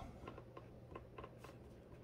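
Faint light taps of fingertips on a coffee maker's glass touch panel, several in quick succession, with no answering beep: the touch display is not registering the presses.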